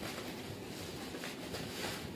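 Crinkling and rustling of clear plastic gift wrapping as it is pulled off a cardboard box, growing louder near the end.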